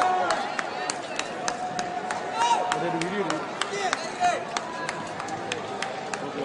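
Indistinct voices of several people talking and calling out, with many short sharp clicks scattered through it.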